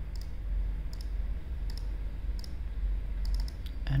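Computer mouse clicking: several short, single clicks at irregular intervals, over a steady low hum.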